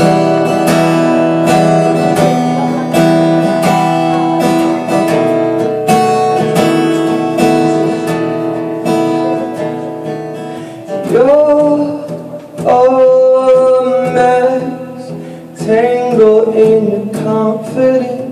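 Steel-string acoustic guitar strummed in a steady rhythm as the intro to a song, with a man's singing voice coming in over it about eleven seconds in.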